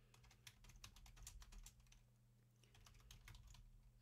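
Faint computer keyboard keystrokes, a quick run of key taps with a short pause about halfway through.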